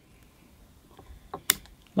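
Bonsai cutters snipping off a crown of thorns branch: a couple of faint clicks, then one sharp snap about one and a half seconds in as the branch is cut through.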